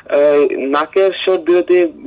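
Speech only: a person talking continuously, the voice thin and narrow-sounding as if heard over a telephone or radio line.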